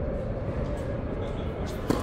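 Tennis racket striking the ball on a serve: one sharp pop near the end, over a steady background hum.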